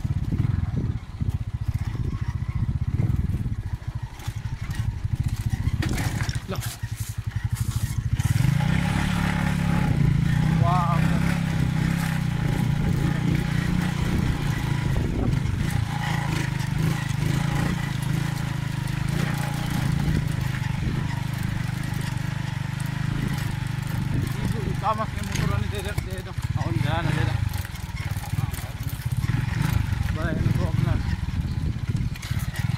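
Motorcycle engine running while riding, with knocks and rattles in the first several seconds, then a steadier engine note from about a quarter of the way in.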